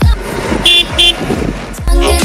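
Two short horn toots about a third of a second apart, heard during a break in electronic dance music, before the beat comes back in.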